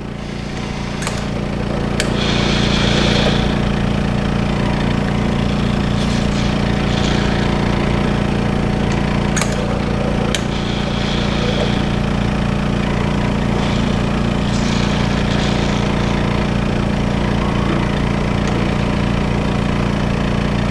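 BioTek ELx405 plate washer's vacuum pump running steadily with a fast, even pulsing hum, while the wash manifold aspirates and dispenses in short hissing bursts about every four seconds. A few sharp clicks from the washer's valves and moving parts.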